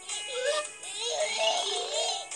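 Gentle background music from an animated children's story app, with a cartoon baby cooing and babbling over it in wavering, sing-song sounds.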